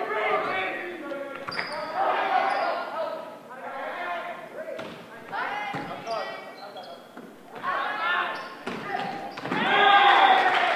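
Volleyball rally in a gymnasium: players calling out, sneakers squeaking on the hardwood floor and the ball being struck, all echoing in the hall. Voices swell loudly near the end.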